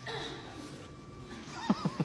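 A person's high-pitched laugh breaking out near the end in quick pulses that rise and fall in pitch.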